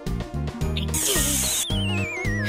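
A short hiss from a cartoon aerosol spray can about a second in, over bouncy children's background music with a steady beat. Right after it, a wobbling whistle glides down in pitch.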